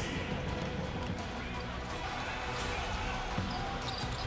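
Steady arena crowd noise, with a basketball being dribbled on the wooden court.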